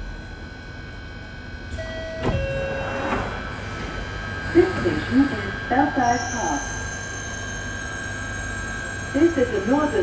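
London Underground Northern line train doors sliding open at a station stop about two seconds in, with a falling two-note chime, a thump and a short hiss. The train's recorded announcement voice follows, over the steady hum of the stationary train.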